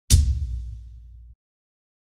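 Cinematic impact sound effect: one sudden hit with a low, decaying tail that cuts off abruptly just over a second later.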